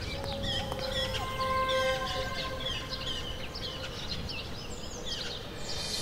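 Birds chirping: many short, high calls, with a few longer held notes, over a steady low background noise.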